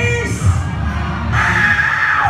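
A live audience cheering and screaming over loud music with a bass beat; the cheering swells about halfway through.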